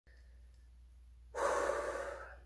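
A woman sighs: one long breath blown out through the mouth, starting just over a second in, over a faint steady low hum.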